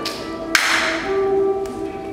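Music of several steady held notes, with a cymbal struck about half a second in and ringing out as it fades.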